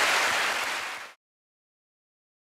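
Studio audience applauding, cut off suddenly about a second in.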